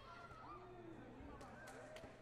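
Faint, echoing sports-hall ambience with distant voices, and three short sharp slaps or taps in the second half.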